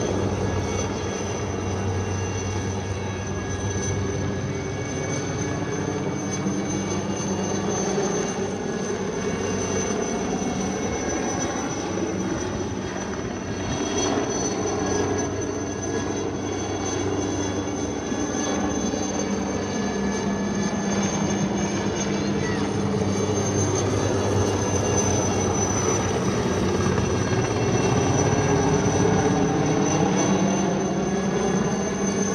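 Light turbine helicopter flying overhead, with a steady low rotor drone and a high turbine whine. The sound grows somewhat louder near the end as it comes closer.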